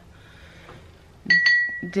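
Two quick clinks against the small water container, each ringing briefly on one clear high note, as a scribble stick is dipped into the water.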